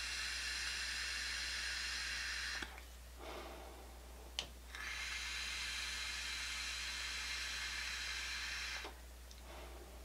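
A Kimsun Air 10 pod vape being drawn on. A faint, steady hiss of air through the pod lasts about two and a half seconds, then drops away. After a short pause with a single click, a second hiss of about four seconds follows.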